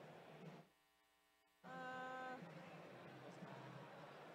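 Faint arena background noise that drops out about half a second in, leaving only a low electrical hum, then returns about one and a half seconds in with a short steady buzzing tone lasting under a second.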